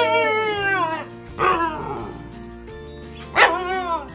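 Hokkaido dog howling and yelping: a long falling howl that ends about a second in, then two short rising-and-falling cries, the last and loudest near the end. Soft music plays underneath.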